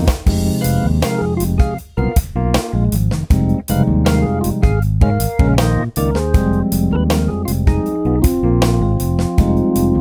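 Roland FA-06 workstation playing a looping sequenced backing with a steady drum rhythm, while a keyboard part is played live on its keys over the top.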